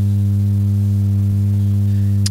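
Loud, steady electrical mains hum in the microphone and sound-system feed: a low buzz with a ladder of higher overtones that holds unchanged throughout.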